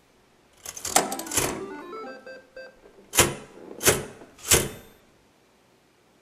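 Electronic sound effects from a video's opening, played back in a room: a quick cluster of clicks, a run of short beeps at stepped pitches, then three sharp hits a little over half a second apart, each ringing briefly.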